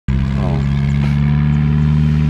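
Compact farm tractor's engine running steadily at an even pitch as it hauls a trailer loaded with rice sacks.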